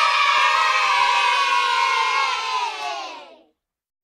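A group of children shouting together in one long cheer. It fades slightly and cuts off about three and a half seconds in.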